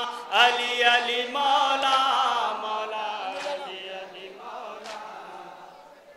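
A man chanting a line of an Urdu noha into a microphone in a held, wavering melody. The voice is strong for the first two or three seconds, then trails off and fades.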